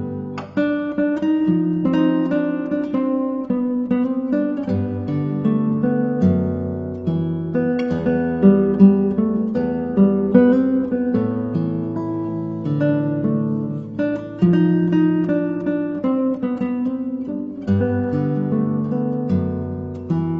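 Instrumental acoustic guitar music: plucked and strummed notes and chords in a slow, flowing progression.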